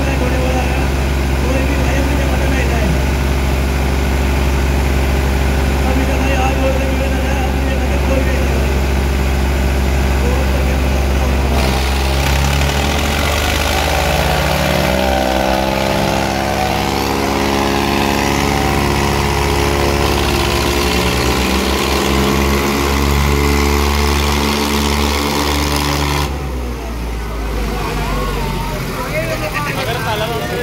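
Two farm tractors' diesel engines running hard and steady, then wavering in pitch as the revs rise and fall. Near the end the engine sound drops back and shouting voices come through.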